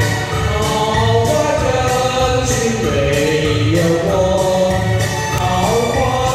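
A man and a woman singing a pop duet through microphones over a backing track with a steady beat.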